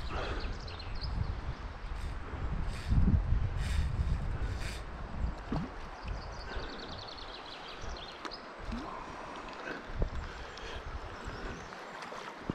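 Wind buffeting the microphone over a flowing river, loudest about three seconds in and easing in the second half, with two short runs of fast, even ticking, near the start and around six and a half seconds.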